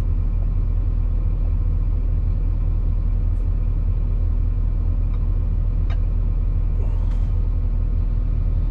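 Excavator's diesel engine idling, heard from inside the cab as a steady low hum, with a few faint light clicks in the middle.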